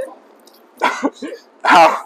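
A man groaning in pain with coughing sounds, twice, the second louder.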